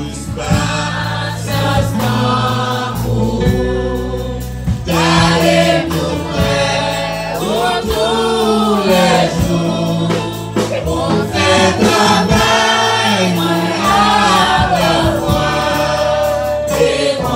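Church congregation singing a gospel hymn together, led by a man's voice at the microphone, over sustained low accompanying notes.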